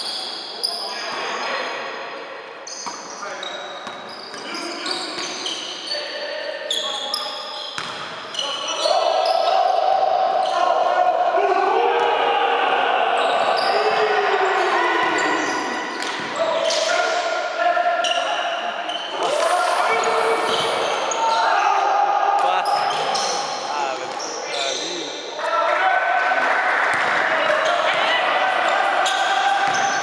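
Indoor basketball game in play in a large, echoing gym hall: a ball dribbling, sneakers squeaking on the court floor, and players calling out. It gets louder about nine seconds in.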